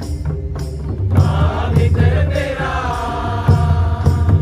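A mixed group of voices singing together in unison, accompanied by hand-beaten two-headed barrel drums keeping a steady rhythm.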